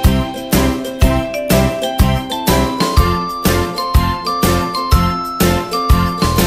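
Background music: a light children's tune with a chiming, bell-like melody over a steady beat of about two strokes a second.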